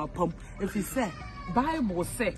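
A woman wailing in a string of short, high cries, each one rising and falling in pitch.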